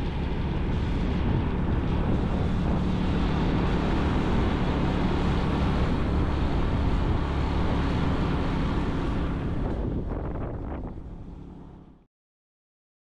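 A vehicle's engine running steadily, with wind buffeting the microphone as it travels. It fades out over the last two seconds.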